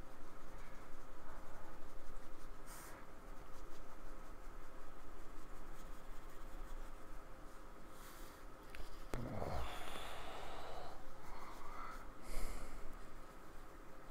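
Small paintbrush dabbing and stroking thick acrylic paint onto a paper painting surface: soft, intermittent scratchy brush sounds.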